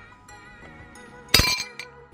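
A metal spoon clinks against a ceramic bowl: one loud, sharp clink about one and a half seconds in, with a smaller one just after, over background music.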